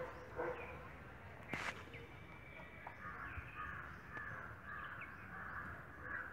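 Faint bird calls outdoors, with one sharp knock about a second and a half in.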